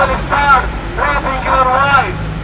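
A man's voice through a handheld megaphone in two loud phrases, a short one early and a longer one in the second half, over a steady low rumble.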